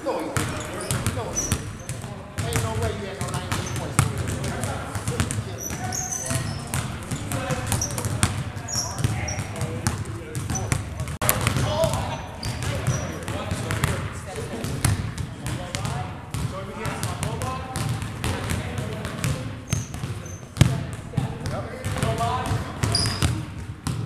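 Several basketballs being dribbled on a hardwood gym floor, the bounces overlapping in a dense, irregular stream.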